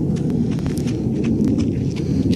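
Wind buffeting the microphone: a steady, loud low rumble.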